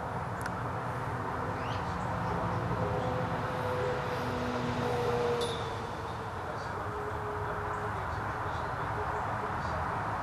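Motor oil draining from an upturned quart bottle through a plastic funnel's filter screen into the engine's oil filler, a steady low trickle, with a few faint high chirps.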